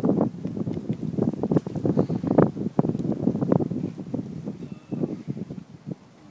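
Wind buffeting the microphone in irregular gusts, a rough low rumble that eases off near the end.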